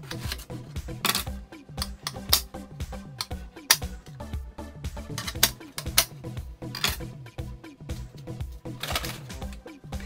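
Background music with a steady dance beat. Over it, a kitchen knife chops through aubergine onto a cutting board, knocking sharply about ten times at uneven intervals.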